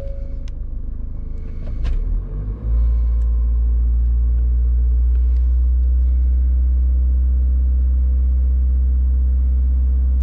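Ford EcoSport engine being started with the push-button: a short tone near the start, about a second of cranking, then it catches and settles into a loud, steady fast idle for a cold-start warm-up.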